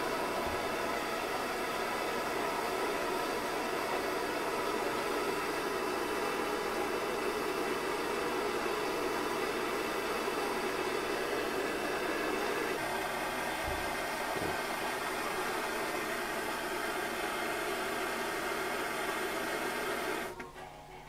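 Cartridge gas blowtorch burning steadily, its flame a continuous rushing hiss as it heats a brass rod. The hiss changes slightly about two-thirds through, with a couple of faint low knocks soon after.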